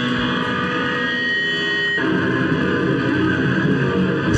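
Loud distorted electric guitars played live by a hardcore punk band. Held, ringing guitar notes give way about two seconds in to a thicker, heavier full-band riff.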